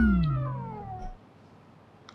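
A comic sound-effect sting: a held pitched tone that slides steadily downward and fades out about a second in, the deflating 'awkward moment' sound.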